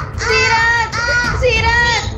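A young girl screaming in distress, four high-pitched cries in quick succession, each less than a second long, as she is snatched and carried off.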